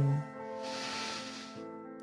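A person's deep breath in, heard as a soft hiss for about a second, over steady background music with long held tones.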